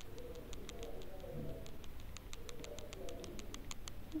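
A pigeon cooing faintly in the background.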